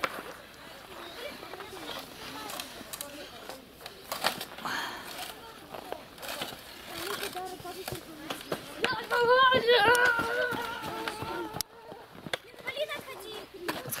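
Children's voices outdoors, with one child's long, wavering call about nine seconds in, over scattered crunches of snow underfoot.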